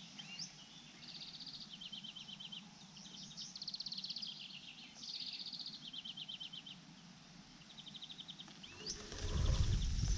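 A songbird singing: a string of high, fast, dry trills and repeated rattling phrases with short pauses between them. About nine seconds in, a loud low rumbling rustle close to the microphone comes up over the song.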